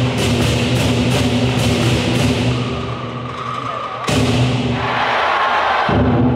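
Lion-dance percussion band playing: a large lion-dance drum beating rapidly under clashing cymbals and gong. The playing thins out past the middle, then comes back in with a sudden crash about four seconds in.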